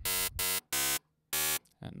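Xfer Serum software synthesizer playing four short notes at the same pitch in quick succession, sounding a wavetable that the editor's noise tool has scrambled into a noisy waveform.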